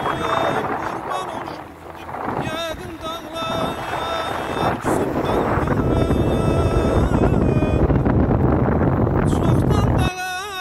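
Wind buffeting the microphone, heavier and louder from about halfway through, over a background song with a wavering, ornamented singing voice.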